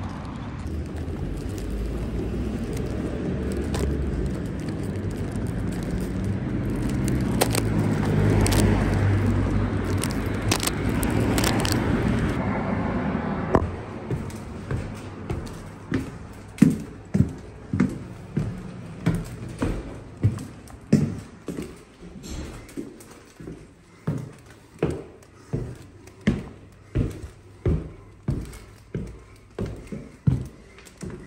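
Steady outdoor street noise with a low rumble of traffic for the first half. About halfway through it cuts to footsteps on a hard floor indoors, even steps about one and a half to two a second.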